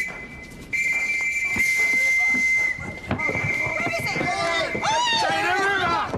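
A police whistle blown in two long, steady, high-pitched blasts, the first starting just under a second in and the second about three seconds in. Voices shout over the second blast.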